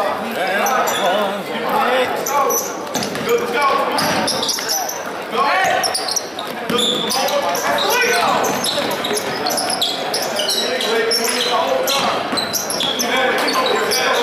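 Basketball bouncing on a hardwood gym floor during play, under a steady din of spectators' and players' chatter, echoing in a large gym.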